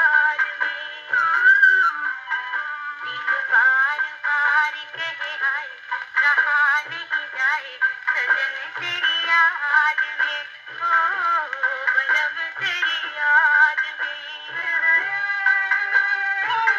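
Acoustic wind-up gramophone playing a shellac 78 rpm record of a film song. The music sounds thin and narrow, with no deep bass or high treble, and a wavering melody over short low beats.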